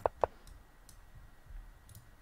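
Two short clicks of a move being played in an online chess game, the second about a quarter second after the first, then quiet room tone.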